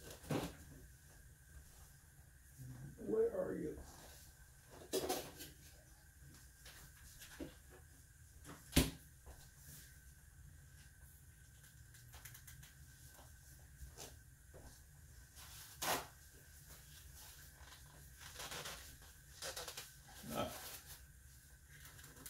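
Sparse kitchen handling noises over a faint steady hum: a refrigerator door opening near the start, then a glass jar of olives being handled, with scattered sharp clicks and knocks. Near the end, the jar's tight lid is gripped through a towel and twisted.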